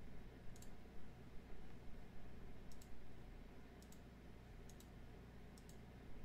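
Computer mouse button clicking about five times, several as quick press-and-release pairs, faint over a steady low hum.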